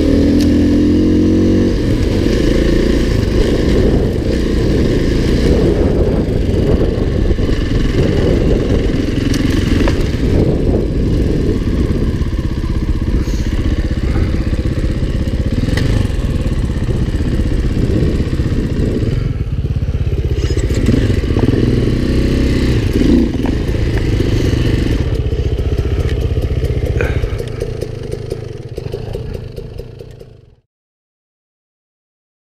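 Dirt bike engine running as it is ridden along a dirt trail, heard from the bike itself, its pitch shifting with the throttle. The sound fades out near the end.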